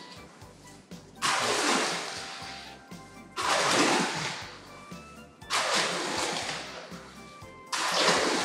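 Steel shovels turning wet, freshly mixed concrete in a steel mixing pan: four scraping strokes, roughly one every two seconds, each starting sharply and trailing off.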